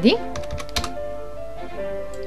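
Computer keyboard typing: a quick run of a few keystrokes in the first second, entering a number, over background music.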